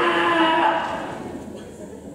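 A long, drawn-out vocal cry held on one pitch, fading away over the second half.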